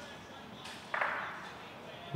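A bowl striking the court's board and the resting bocce balls: a faint knock just over half a second in, then a sharper clack about a second in that rings out briefly. It is a wick, the bowl glancing off the board into the others.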